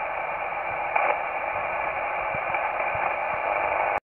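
Steady hiss of HF single-sideband band noise from a Kenwood TS-480 transceiver tuned to 8.825 MHz USB, with no transmission on the channel, and a brief swell about a second in.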